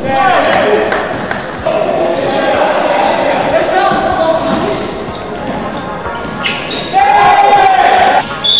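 Basketball bouncing on a hardwood gym floor during play, with players shouting to each other, all echoing in a large sports hall. The loudest stretch comes near the end.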